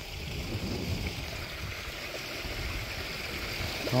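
Water running steadily down a partly iced-over backyard pond waterfall, an even rushing splash with a low rumble underneath.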